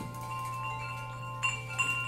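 Metal percussion ringing on in several steady high pitches, struck lightly again twice about a second and a half in.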